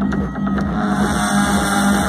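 Electronic dance music played loud through a concert PA, with a steady pulsing bass under sustained synth tones. It is part of the pre-show system-test intro, in its left-channel speaker balance check.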